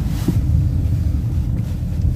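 Steady low road and engine rumble inside a moving BMW car's cabin.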